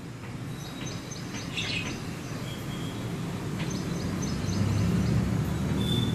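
Birds chirping in short quick runs of high notes, over a low rumble that grows louder through the second half.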